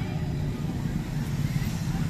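Steady street traffic: car engines and tyres passing close, with faint voices in the background.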